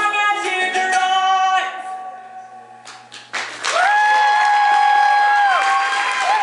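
A woman singing over a strummed ukulele ends a song, and the last chord rings out and fades. About three seconds in, applause breaks out and a loud, long "whoo" cheer is held close to the microphone.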